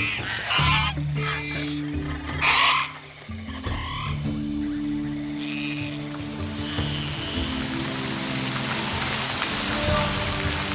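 Several short, high creature calls made for a pack of dwarf Troodons in the first three seconds, over a sustained orchestral score. From about four seconds in, the calls give way to the rushing of a stream and waterfall, which swells toward the end.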